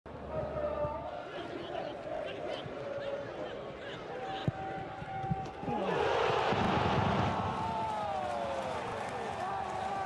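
Broadcast football match sound: players' shouts and calls over thin stadium noise, with a sharp ball kick about halfway through. About six seconds in the crowd noise becomes louder and fuller.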